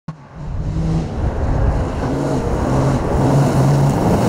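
Kia Sportage TT rally-raid car's engine running hard on a forest dirt track, quickly getting louder at the start, then loud and steady, with its engine note stepping in pitch a few times.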